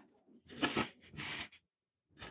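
Two short rustling scrapes, each about half a second long, as tools are handled on the wooden workbench while the tweezers are picked up.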